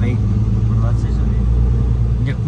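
Truck engine and tyres droning steadily inside the cab at motorway speed on a wet road.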